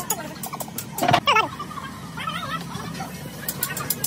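A domestic fowl calling: a loud warbling, gobble-like call about a second in, then a shorter warble about a second later.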